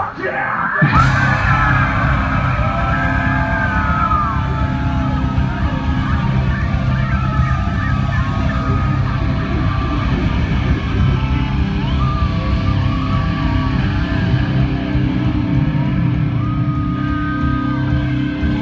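Rock band playing live and loud, with electric guitar, bass and drums and gliding high pitched lines over a heavy low end. The sound dips briefly and jolts back in the first second.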